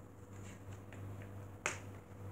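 A single sharp click about one and a half seconds in, over a faint low hum.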